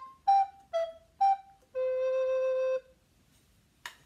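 Handmade Bressan-model alto recorder with a wooden A440 body playing the end of a scale: a few short notes stepping down from a high note, then one long held low note lasting about a second. A couple of faint clicks near the end.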